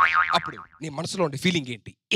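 A man talking animatedly, with a short twanging 'boing'-type comic sound effect at the very start.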